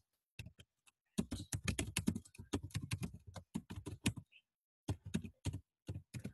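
Typing on a computer keyboard: a quick run of key clicks lasting about three seconds, a brief pause, then a few more keystrokes near the end.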